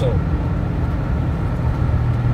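Steady low rumble of a car's engine and tyres heard from inside the cabin while driving through a road tunnel.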